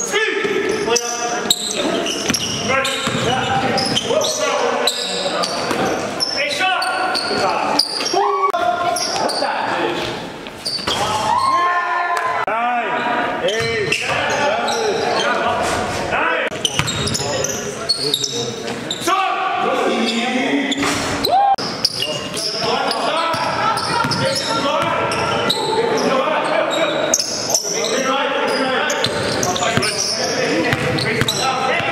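Live court sound of a basketball game in a large gym: a basketball bouncing on the hardwood floor, with players' voices calling out across the hall.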